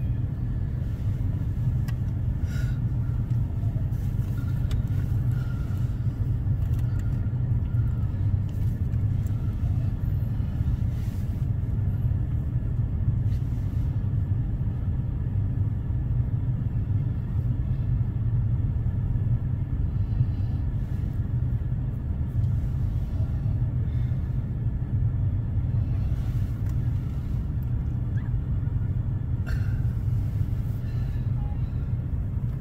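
A steady low rumble, with a few faint ticks.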